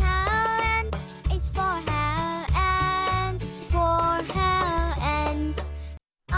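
Children's phonics song: a sung melody with gliding notes over a backing track with a steady bass line.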